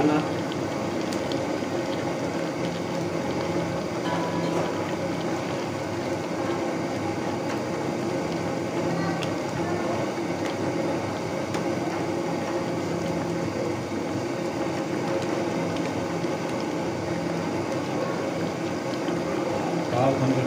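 Beef, tomato and potato curry simmering in a frying pan: a steady bubbling hiss.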